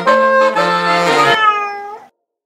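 Multi-tracked alto saxophones playing a phrase in two parts. The low part stops about one and a half seconds in, and the last high note bends in pitch as it fades out at the end.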